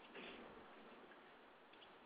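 Near silence: faint steady hiss of the line in a pause between speech.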